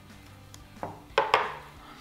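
A few short knocks from kitchen handling about a second in: a silicone spatula stirring cream and condensed milk in a glass bowl, and an open tin can set down on the stone countertop.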